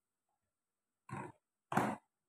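Two short scrubbing sounds of a bowl being washed by hand, the first about a second in and the second, louder, near the end.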